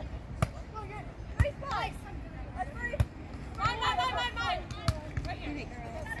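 A beach volleyball being struck during a rally: four sharp slaps of hands on the ball, one to two seconds apart. Voices call out between the hits.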